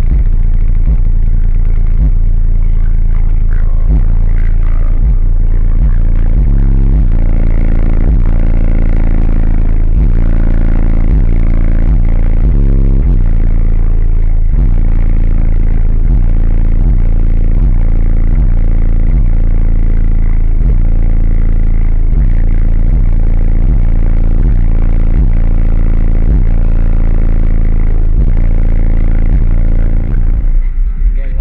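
Four custom Fi BTL subwoofers in a fourth-order wall enclosure playing bass-heavy music at extreme volume, with a steady beat. The deep bass overloads the car-mounted microphone, so it comes through as a flat, distorted rumble.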